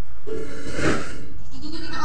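A woman yawning aloud: a drawn-out voiced yawn with a breathy rush of air about a second in, and a second voiced, rising sound near the end.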